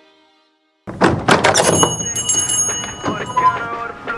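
The song's music fades out, and after a short silence a loud run of knocks and thuds starts, mixed with a few brief high ringing tones.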